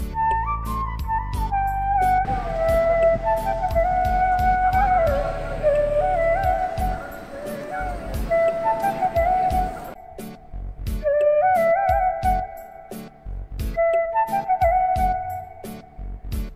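Background music: a flute melody over a steady beat, with the bass dropping out about halfway through.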